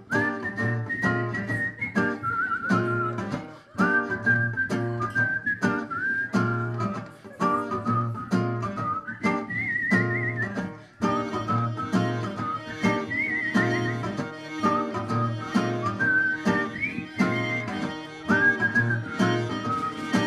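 Live band playing an instrumental passage: a whistled melody over strummed acoustic guitar, with a regular pulsing bass and drums. It starts all at once.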